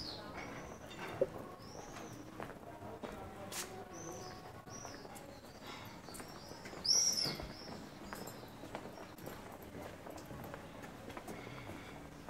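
Birds calling in short, high, arched chirps, repeated every second or two with the loudest about seven seconds in, over light footsteps on stone paving and faint distant voices.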